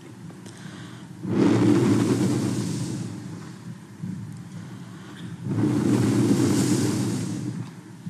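Two long breaths blown into a handheld microphone. Each one swells quickly and fades over about two seconds, the second coming about four seconds after the first, over a steady low hum of the old recording.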